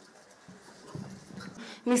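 A short lull in a public address: faint background murmur, then near the end a woman begins speaking loudly into a microphone.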